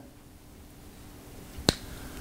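A pause with faint room tone and a low steady hum, broken once about one and a half seconds in by a single sharp click.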